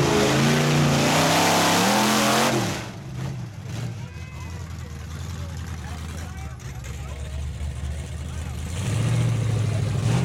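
Pickup truck's engine revving hard through a mud pit, its pitch rising and falling, then dropping off sharply about three seconds in to a quieter low engine drone. Near the end an engine gets louder again.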